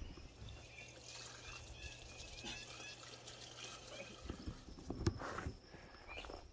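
Quiet outdoor ambience with faint, scattered bird chirps, a low steady hum that stops about two-thirds of the way through, and a few soft taps near the end.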